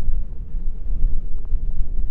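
Wind buffeting the microphone: a loud, gusting low rumble.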